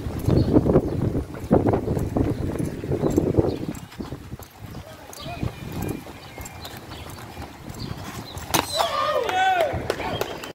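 BMX bike rolling and clattering on concrete, with irregular knocks from the tyres and frame during one-wheel balance tricks, loudest in the first few seconds. A voice calls out near the end.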